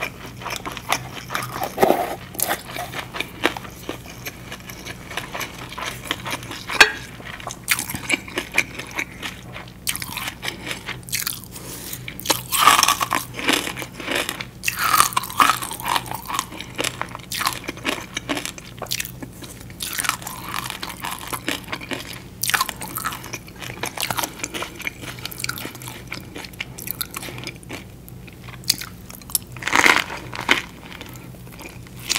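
Close-miked eating of a fresh rice-paper spring roll with shrimp, pork and lettuce: biting and chewing in irregular bursts, with crunching and wet mouth sounds.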